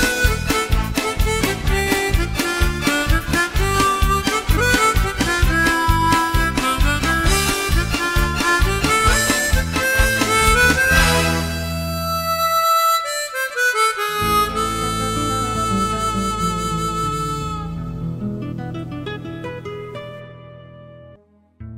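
Suzuki G48 harmonica playing a melody over a guitar accompaniment that keeps a steady beat. About halfway through the beat stops and the tune closes on long held notes that fade out near the end.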